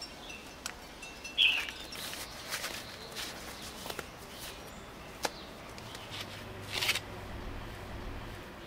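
Gardening gloves with rubber-coated palms being pulled onto the hands: fabric rustling, rubbing and small handling clicks, with a longer rustle near the end. A short high chirp sounds about a second and a half in.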